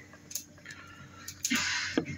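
Light clicks and handling noise from a Nordic Lifting barbell clamp being turned over in the hands, with a short hiss near the end.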